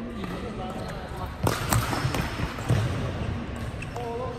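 Sharp knocks and thuds in a large indoor badminton hall between rallies, a pair about a second and a half in and another near three seconds, over a background murmur of voices.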